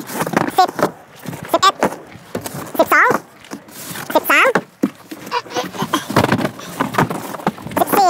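Sped-up sound of cardboard banana boxes being knocked, shoved and dropped into a small hatchback's boot, with scuffing steps, all raised in pitch by the fast-forward. A high-pitched, sped-up voice calls out a count several times between the knocks.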